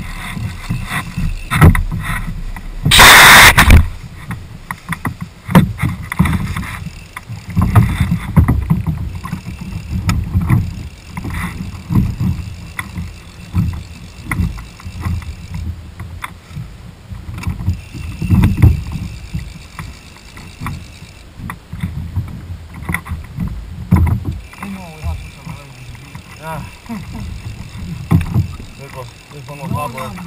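Water slapping against the hull of a small flats boat, with irregular low thuds and knocks on the deck. A loud, harsh burst of noise lasts about a second, about three seconds in.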